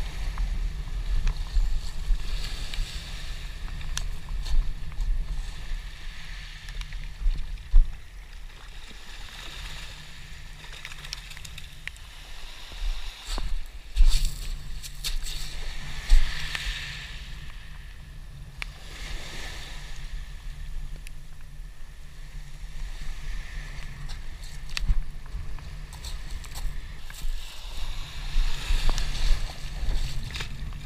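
Wind rumbling on the microphone, with small waves washing over a pebble beach in swells every few seconds and a few sharp knocks.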